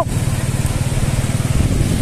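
Motorcycle engine running steadily at low revs, an even low rumble.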